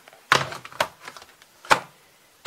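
Three sharp knocks, as of things being set down and knocked against a wooden shoe rack: one shortly after the start, another half a second later, and the loudest near the end.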